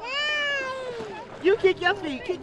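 A high-pitched voice letting out one long, slowly falling call of about a second, followed near the end by a few short, loud cries.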